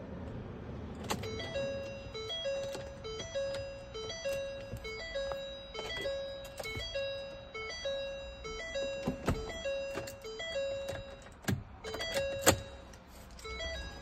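A simple electronic chime melody of short, plain notes, about two a second, stepping between a few pitches. A few sharp knocks sound over it, the loudest near the end.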